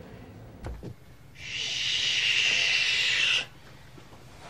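A soft low thump, then a steady hiss lasting about two seconds that cuts off abruptly: a sound effect in a TV scene's soundtrack.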